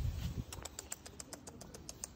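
A pit bull puppy wearing a new chest harness with a leash clipped on moves about on a ceramic-tiled floor, making a run of light, rapid clicks, about ten a second, from about half a second in. There is a brief low rumble of handling noise at the start.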